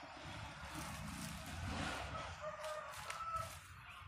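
Faint outdoor ambience with a distant bird call, a few held tones in the second half, and a few soft clicks.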